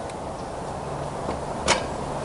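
A single sharp clack about one and a half seconds in as the Sky-Watcher EQ6-R Pro equatorial mount head seats onto the tripod's dowel, over a steady low hum.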